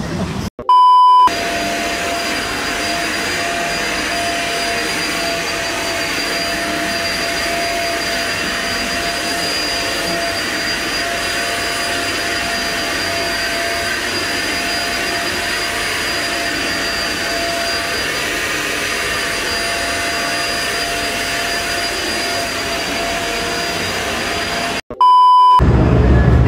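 A short, loud, steady beep tone, then an upright vacuum cleaner running steadily with a constant whine for over twenty seconds, then a second identical beep near the end.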